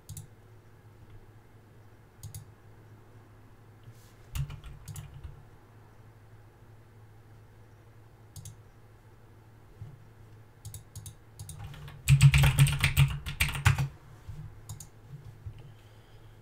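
Scattered single clicks at a computer, then a quick two-second burst of typing on a computer keyboard about twelve seconds in, over a faint steady low hum.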